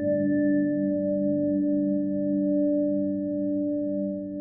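Closing sting: one struck, bell-like tone rings on with several steady pitches and slowly fades.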